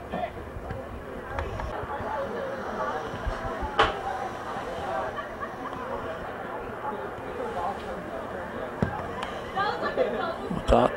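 Spectators' and players' voices chattering and calling out around a soccer pitch during play, with one sharp knock about four seconds in.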